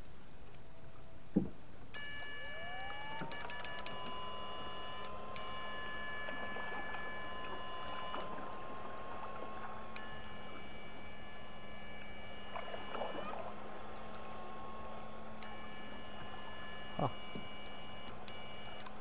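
Electric fishing shocker whining: a pure tone climbs in pitch about two seconds in and holds steady over a low hum, while higher tones cut in and out in spells of a few seconds as the current to the pole in the water is switched on and off. A couple of short knocks come from the boat.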